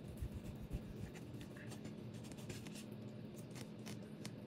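A table knife and fork scraping and clicking against a ceramic plate while cutting a piece of boiled chicken, with a few soft knocks in the first second.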